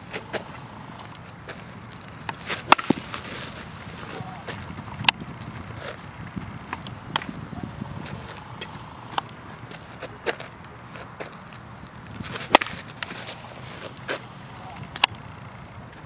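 Baseball fielding drill: sharp cracks of a ball being hit and fielded into a leather glove, a few loud ones spread through with fainter knocks between, over steady outdoor background noise.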